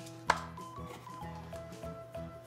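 A single sharp pop about a third of a second in as the plastic lid is pulled off a Play-Doh can, over background music.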